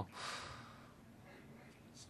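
A short breath taken close to a microphone, fading out within about a second, then near silence with faint room tone.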